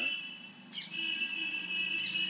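A steady high-pitched whine made of several close tones over a faint low hum; it fades out early on and cuts back in after a short click about two-thirds of a second in.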